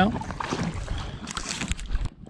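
Water sloshing and dripping around a paddled inflatable packraft, with low wind rumble on the microphone and a few short knocks about one and a half seconds in.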